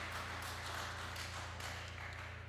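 Audience applause dying away, over a steady low electrical hum.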